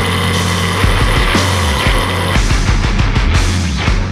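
Heavy rock music played loudly by a full band, with held low bass notes under dense, fast drumming.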